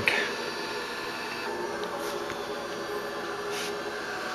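Steady electrical hum made of several even tones, from the solar power system's equipment in the room, with a couple of faint brief rustles.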